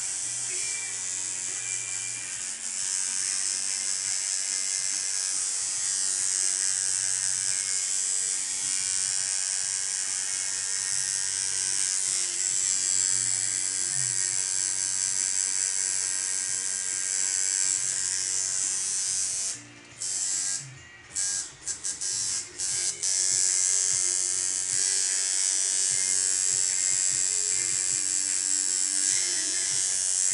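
Electric tattoo machine buzzing steadily as the needle works ink into skin. Near two-thirds of the way through it stops and starts several times in quick succession.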